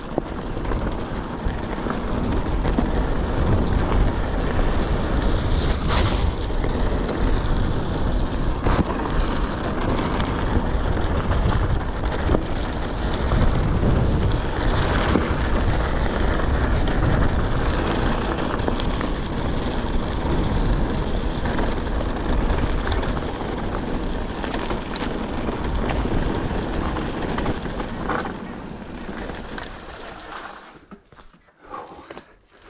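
A full-suspension mountain bike ridden at speed on a gravel and dirt trail: tyres crunching and the bike rattling over bumps, with heavy wind rumble on the microphone. It quietens near the end as the bike slows.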